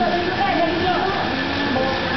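Steady wash of pool water noise, with people's voices heard over it in the echoing space of a swimming pool.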